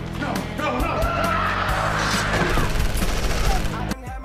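Action-thriller film soundtrack: dramatic score with steady sustained low notes, under a dense noisy sound effect with a wavering high tone that builds through the middle and cuts off sharply at the end.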